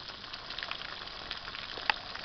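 Breaded ground-beef patties frying in a pan of hot oil: a steady sizzle with scattered crackles and one sharp pop near the end.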